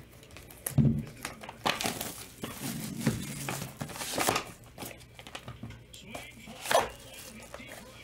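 Hands opening a cardboard trading-card hobby box and handling its packaging: crinkling and rustling with a few sharp knocks.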